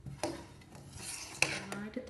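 A metal spoon scraping around the bottom and sides of a stainless steel saucepan as thick custard is stirred, with two sharp clinks of spoon on pan.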